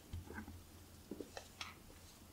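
Faint footsteps in hard shoes on a floor: a few short, separate knocks and clicks over a low room hum.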